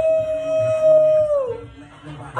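A man's long howled "ooh" of excitement: it swoops up, holds one steady pitch for about a second and a half, then slides down and fades out.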